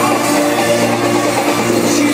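Live band music playing loud and steady through an arena sound system, heard from among the crowd, with no vocal line in this stretch.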